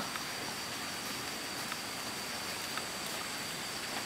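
Steady outdoor background noise: an even hiss with a faint, steady high-pitched tone running through it.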